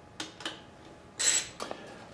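Faint tool-handling sounds on the engine: a couple of light clicks, then a short scraping rustle just over a second in.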